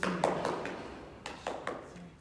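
Sharp taps and knocks in two quick groups of three or four, the first at the start and the second a little past the middle.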